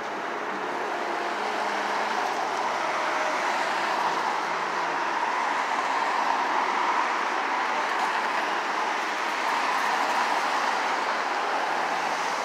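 Steady rushing street and traffic noise that rises a little over the first few seconds and then holds.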